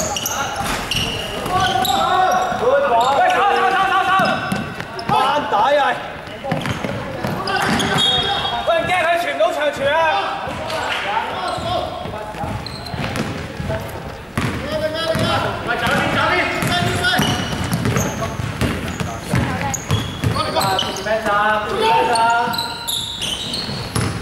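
Basketball game in a large, echoing sports hall: players shouting and calling to each other, with a basketball bouncing on the wooden court and short sharp knocks among the voices.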